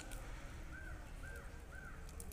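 A bird calling four times in quick succession, each call short and arched in pitch, over a faint low rumble.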